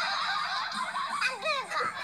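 High-pitched, giggly voice sounds with a few falling pitch slides near the end.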